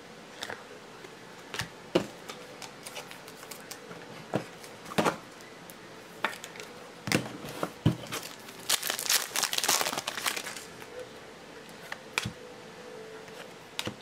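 Trading cards and plastic card holders being handled on a tabletop: scattered sharp clicks and taps, with a stretch of crinkling plastic about two-thirds of the way through.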